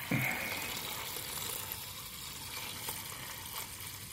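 Gasoline-diluted engine oil pouring in a steady stream from the crankcase drain hole of a Honda Valkyrie and splashing into a drain pan. The oil is thin with fuel, which the owner puts down probably to busted piston rings.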